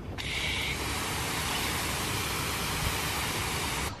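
Garden hose spray nozzle spraying water onto a lawn: a steady hiss of spray that cuts off suddenly near the end.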